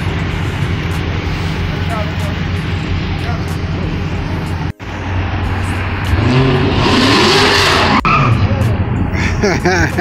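Car engine running steadily, then revved twice about six to eight seconds in, its pitch rising and falling each time.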